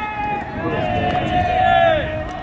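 Baseball players' long, drawn-out shouts during fielding practice, two voices overlapping, each call held for a second or more.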